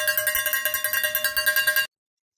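Small metal handbell rung rapidly, about six or seven strokes a second, with a steady ringing pitch; it stops abruptly near the end.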